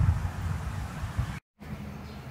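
Wind noise on the microphone that dies away into a moment of dead silence at an edit. A steady low hum of honeybees at the hive entrance follows.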